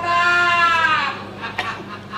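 A person's long, drawn-out vocal cry, held on one pitch for about a second and then trailing off, a bleat-like call; a few faint clicks follow.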